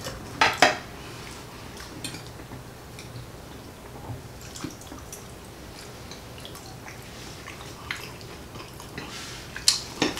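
Metal forks clinking and scraping on dinner plates while eating, a handful of sharp clicks spread a second or two apart, the loudest just after the start and near the end, over a low steady hum.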